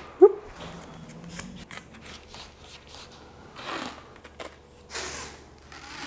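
Quiet handling of hockey sticks and stick tape at a table: a sharp knock just after the start, then soft rustling and a few short rasps, the sound of tape peeling off the roll as it is wrapped onto a stick blade.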